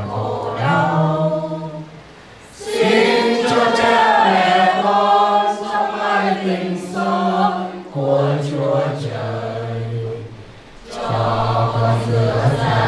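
A group of men's and women's voices singing a prayer chant together in long held notes, pausing briefly for breath about two seconds in and again near the end.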